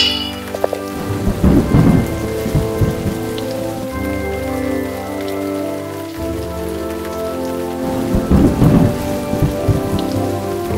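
Thunderstorm sound effect: steady rain with two rolls of thunder, one about a second in and another around eight seconds in. A short sharp crack comes right at the start.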